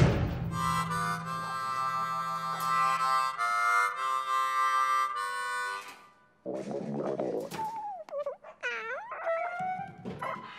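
Harmonica playing slow, sustained chords for about five seconds, then stopping. After a short gap, wavering, sliding tones follow.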